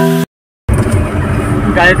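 A musical chord cut off abruptly by an edit, a brief gap of dead silence, then the steady low rumble of engine and road noise inside a moving car's cabin.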